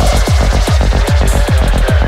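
Full-on psytrance at 149 BPM: a steady, driving kick-and-bass pulse about five times a second, with synth and hi-hat sounds above it.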